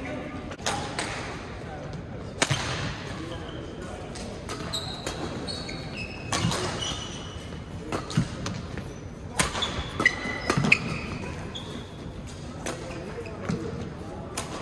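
Badminton doubles rally: rackets striking the shuttlecock in several sharp cracks a few seconds apart, ringing in a large gym hall, with short high squeaks of court shoes on the floor and thudding footsteps between shots.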